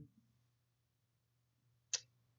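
Near silence with a faint steady low hum, broken by a single short click just before the end.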